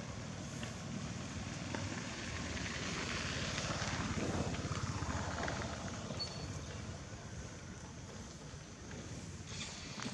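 A motor vehicle passing, its engine noise swelling to its loudest about halfway through and then fading away.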